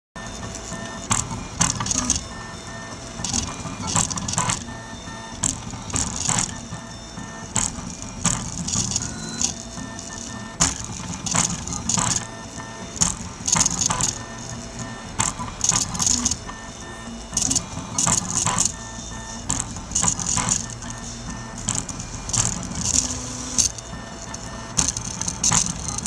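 Prusa Mendel 3D printer's stepper motors whining in short tones that keep changing pitch as the print head moves back and forth between two parts. A louder rasp comes every second or two on the quicker moves.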